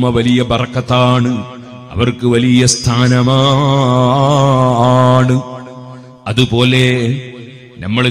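A man's voice chanting in a melodic, drawn-out recitation style, short sung phrases leading into one long held, wavering note in the middle.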